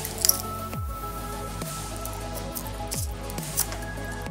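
Background music playing steadily, with a few short crackles of plastic shrink wrap being cut and peeled off a small cardboard box, the sharpest just after the start.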